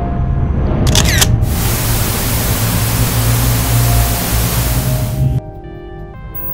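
Logo-sting sound design: held synth tones over a deep rumble, a camera shutter click about a second in, then loud static-like hiss for about four seconds that cuts off suddenly, leaving quieter held synth tones.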